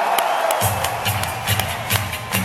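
Arena crowd cheering as a live rock band starts a song: about half a second in, a low, pulsing bass line and sharp drum hits come in.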